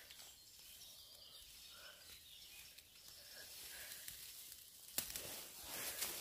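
Faint outdoor woodland ambience: a steady soft hiss, with one sharp click about five seconds in.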